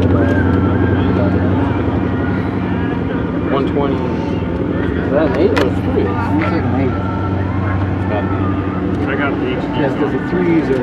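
Steady low drone of an engine running at an even speed, with indistinct voices over it.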